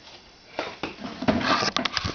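Handling noise: a quick run of clicks, knocks and rustling on the camera body, starting about half a second in and growing louder in the second half.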